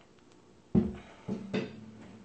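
A guitar being knocked as it slips, three knocks about a second in, the first the loudest, with its strings ringing on in a low steady tone after each.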